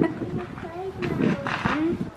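Close, wordless voice sounds of a woman and a toddler playing: drawn-out vocal noises whose pitch slides up and down, with a brighter, breathier sound about one and a half seconds in.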